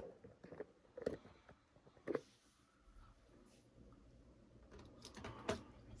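Faint handling noises: a soft knock about a second in, another about two seconds in, and a short cluster of small clicks and taps near the end.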